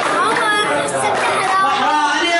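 A group of boys chattering, many voices talking over one another.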